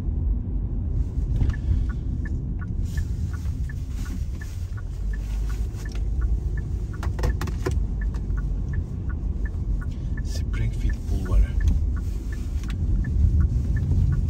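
Steady low rumble of a car driving on a city street, heard from inside the cabin: engine and tyre noise, with small scattered ticks over it.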